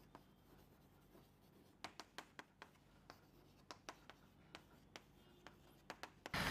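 Chalk writing on a chalkboard, very faint: a scatter of short taps and clicks as letters are written, mostly from about two seconds in.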